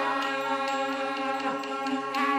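Huayin laoqiang, the traditional ensemble music of Shaanxi: a sustained pitched note held steady over light, recurring percussive clicks.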